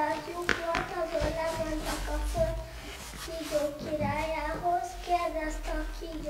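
Children's voices singing a simple melody in held, stepping notes, with a few light knocks.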